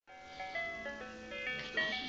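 Handheld electronic children's toy playing a simple jingle of short, stepped beeping notes through its small speaker.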